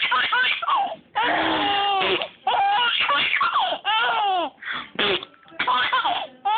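A baby laughing in a run of about six high-pitched voiced bursts, each rising and falling in pitch, with short breaks between them.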